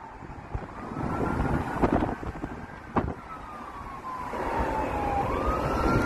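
ARCA stock cars racing on the speedway, heard from a passing road car: a high drawn-out engine note that falls slowly over a few seconds, then a new one rising near the end, over the car's own road rumble.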